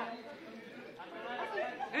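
Chatter of several people talking, quieter in the first second, with voices picking up toward the end.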